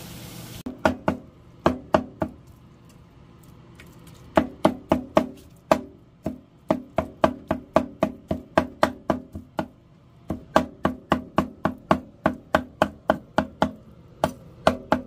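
Knife chopping cooked beef cheek meat on a wooden cutting board, the blade knocking on the board in quick runs of about three or four strokes a second, with a pause of about two seconds near the start.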